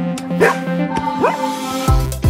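Electronic background music, with two short rising yelps from an Irish Setter at play, the first about half a second in and the second just past a second.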